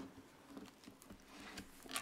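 Faint scattered taps and rustles of people moving as communion is given, with a louder rustle near the end.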